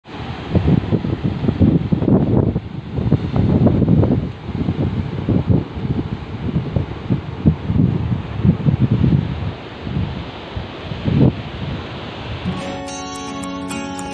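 Wind buffeting the microphone in irregular gusts over the wash of surf breaking on rocks. Near the end, strummed acoustic guitar music starts.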